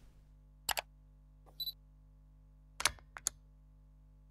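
A few sharp clicks over a faint steady electrical hum: a quick double click under a second in, a short high blip around a second and a half, then three clicks close together near three seconds, the first of them the loudest.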